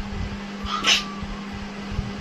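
A short rising squeal, a single vocal burst about a second in, over a steady low electrical hum.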